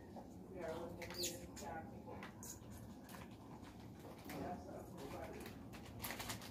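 A faint voice saying a few short words now and then, with soft scattered clicks and taps.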